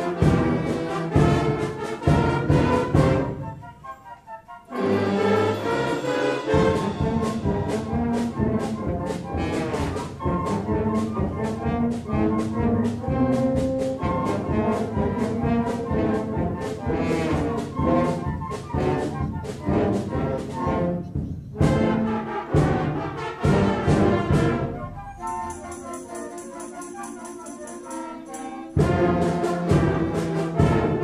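School concert band of woodwinds, brass and percussion playing, opening with loud full-band chords. There is a brief break about four seconds in, then steady playing, a quieter passage with high held tones around twenty-five seconds in, and the full band coming back in loudly near the end.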